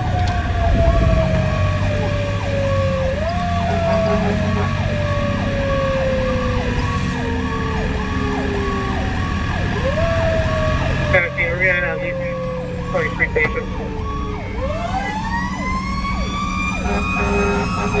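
A fire engine's mechanical siren heard from inside the cab, over the truck's engine drone. Its wail slowly falls in pitch, is pushed back up twice, then winds up in a long climb to a high wail near the end.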